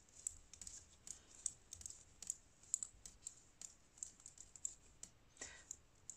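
Faint, quick clicks of metal circular knitting needle tips tapping together as stitches are knitted one after another, about two to three clicks a second in an uneven rhythm.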